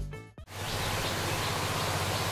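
An advertising jingle cuts off about half a second in, followed by a steady outdoor background hiss with a low hum.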